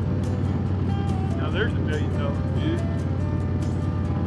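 Touring motorcycle engine running steadily at cruising speed, with road and wind noise, and faint music or voices underneath.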